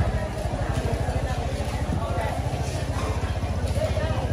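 Small motorbike engine running nearby with a steady low putter, over faint market voices.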